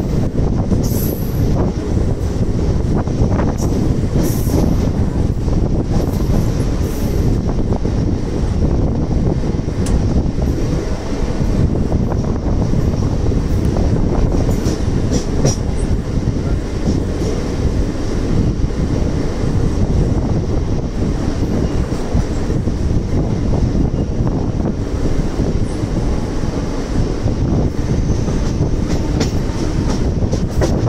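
Mumbai suburban electric local train running at speed, heard from its open doorway: a steady, loud rumble of wheels on the rails with rushing air, and occasional light clicks.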